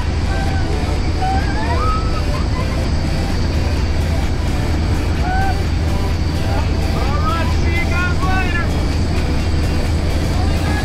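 Steady, loud drone of a jump plane's engine and propeller heard from inside the cabin during the climb. Brief voices break through it a few times.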